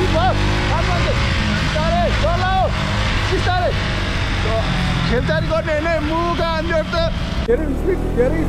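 A KTM Duke 200 motorcycle with a single-cylinder engine, ridden at road speed, with wind and road noise over the microphone. Over it runs a melodic, voice-like line of short rising and falling notes, busiest near the middle of the passage.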